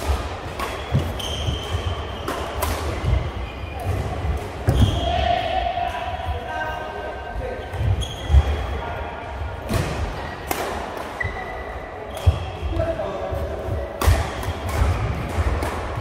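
Doubles badminton rally in a large echoing hall: sharp racket strikes on the shuttlecock, short shoe squeaks on the court mat and thudding footsteps, with voices from around the courts.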